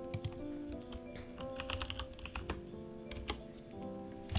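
Computer keyboard typing in short, irregular runs of keystrokes, heard over background music of held notes.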